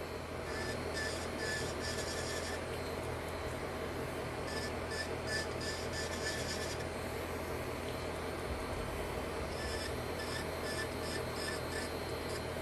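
Electric nail drill running steadily with a small cuticle bit, with a light scratchy grinding that comes and goes as the bit touches the nail near the cuticle.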